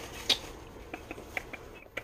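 A cardboard tarot card box being handled and opened: quiet rustling that fades out in the first half second, then a few scattered small clicks and taps from fingers on the box.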